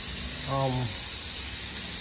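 Steady high hiss of spraying water, unbroken throughout, with a man's brief "um" over it.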